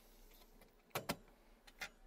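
Faint clicks of computer hardware being handled in a server case: two quick clicks about a second in and a softer one near the end, over quiet room tone.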